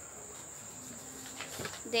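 A steady, high-pitched cricket trill in the background.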